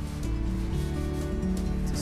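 Background music with steady held tones, over the crinkly rustle of thin disposable plastic food gloves being pulled onto the hands.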